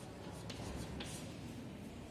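Chalk writing on a chalkboard: a few short scratchy strokes, the sharpest about half a second and one second in.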